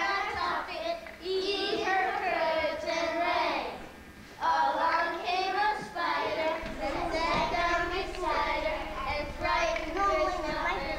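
Young children singing in phrases, with a short break about four seconds in.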